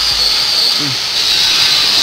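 Steady high-pitched hiss of background noise from a noisy work area, with a man's brief "mm" about a second in.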